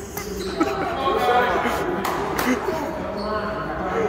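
Voices chattering in a large, echoing gymnasium, with a few sharp thuds on the hardwood floor about two seconds in.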